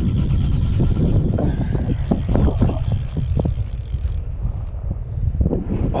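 Wind rumbling on the microphone aboard a small boat, with short splashes of water slapping against the hull through the middle.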